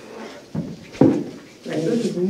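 Two sharp knocks about half a second apart, the second louder, like something bumping a tabletop or microphone, followed by quiet talk in a meeting room.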